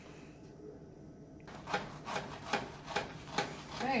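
A knife sawing through a long crusty sandwich roll, a quick run of short scraping strokes, several a second, starting after a quiet second and a half.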